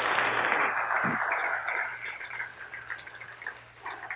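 Congregation clapping, the applause fading out over the first three seconds.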